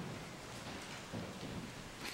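Soft, even rustling and shuffling of a congregation getting to its feet.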